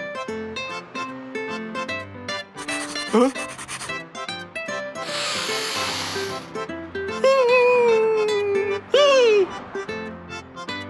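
Bouncy plucked cartoon background music with a cartoon character's wordless vocal noises over it: a short rising squeak about three seconds in, a long breathy sniff around the middle, then a long falling 'ahh' and a quick rising-and-falling 'ooh' near the end.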